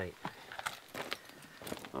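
Footsteps on a gravel track: several short, irregular steps.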